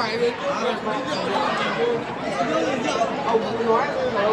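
Many guests chatting at once in a large banquet hall, a steady babble of overlapping voices.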